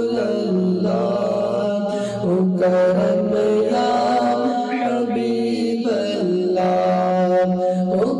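A man's solo voice chanting a naat, an Islamic devotional song, into a handheld microphone. He sings long, held notes that glide from pitch to pitch, with short breaks between phrases.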